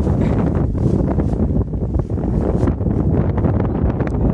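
Strong wind buffeting the microphone in a snowstorm, a loud, uneven low rumble.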